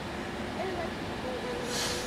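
Metro-North commuter train standing at the platform with its doors closing just before departure: a steady hum of the idling train, with a short hiss near the end.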